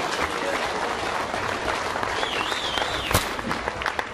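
A roomful of people applauding steadily. A brief wavering high tone sounds just past two seconds in, and a single sharp click comes about three seconds in.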